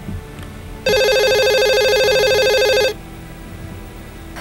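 A telephone ringing: one ring, a fast-trilling tone lasting about two seconds and starting about a second in.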